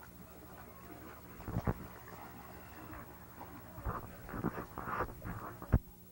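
Splashing steps in shallow water and a few knocks, the loudest sharp one near the end.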